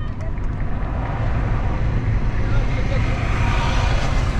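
Steady road and engine rumble inside a moving car's cabin, with a hiss of noise that grows louder in the second half.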